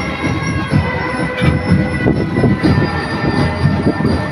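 Parade marching band playing: steady drumbeats under held, ringing tones.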